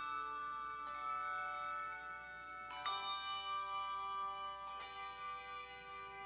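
Handbell choir ringing a slow piece: three chords struck about two seconds apart, each left ringing into the next.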